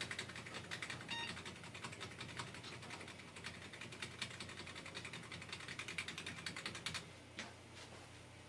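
Computer keyboard key tapped rapidly and repeatedly, several clicks a second, stopping about seven seconds in. This is the boot-menu key (F12) being hammered during the Dell PC's power-on screen to bring up the boot menu.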